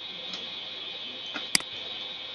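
A computer mouse button clicking once about one and a half seconds in, with a fainter click just before it, over a steady high hiss.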